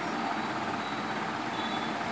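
Steady background noise: an even hiss with no distinct events.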